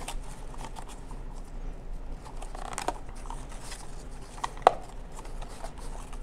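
Ribbon being pulled tight and tied into a bow around a cardstock box: faint rustling of ribbon and card with scattered small ticks, and one sharper click a little over two-thirds of the way through.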